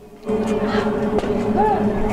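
Open-microphone ballfield ambience: a steady low hum over background noise, with faint distant voices.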